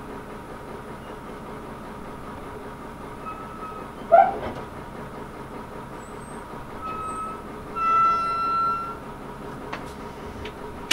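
Train running slowly along the track with a steady rumble. A loud, short squeal rising in pitch comes about four seconds in. Brief high squeals follow, then a steadier squeal of about a second near the end as it draws up to stop.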